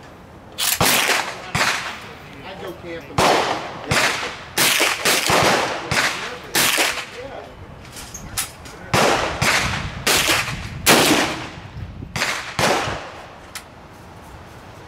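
Rifle shots cracking across a shooting range, about a dozen unevenly spaced over the stretch, some less than a second apart, each trailing off in echo; the loudest comes near the end, around eleven seconds in.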